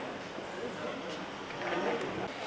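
Indistinct chatter of a crowd moving through a large room, with a voice rising near the end and a faint, thin high-pitched tone in the second half.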